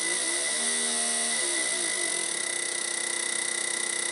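Low-impedance fuel injector buzzing as a peak-and-hold driver pulses it open and shut many times a second. Its tone shifts over the first two seconds while the pulse width is being shortened, then settles into a steady buzz. A thin, steady high whine runs underneath.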